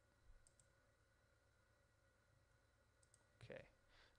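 Near silence over a faint steady hum, broken by a few faint computer mouse clicks, some in quick pairs, as points of a curve are placed. A brief voice sound comes just before the end.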